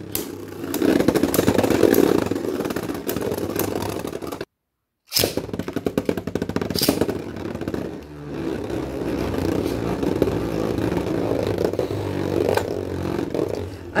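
Two Beyblade Burst spinning tops whirring and grinding as they circle a clear plastic stadium, with repeated sharp clicks as they clash. The sound cuts out completely for about half a second a third of the way in.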